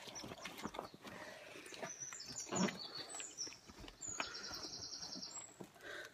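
A small songbird singing faintly: a few short high notes, then a long rapid trill about four seconds in. Soft clicks and handling rustle sound underneath.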